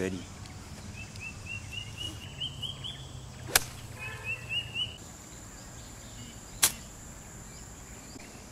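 Two crisp clicks of golf irons striking the ball, about three seconds apart, the first about three and a half seconds in. Between them a bird calls in a quick run of short rising chirps.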